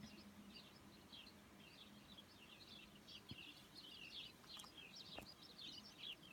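Faint, continuous chatter of many small birds chirping over one another, with a couple of soft clicks partway through.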